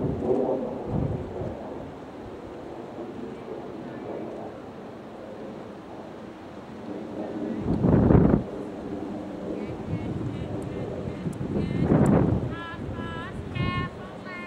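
Wind buffeting the camera microphone in gusts, with loud surges about eight and twelve seconds in.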